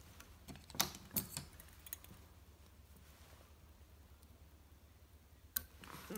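A few light, sharp clicks and taps of small fly-tying tools being handled and set down, several about a second in and one near the end, over quiet room tone with a low hum.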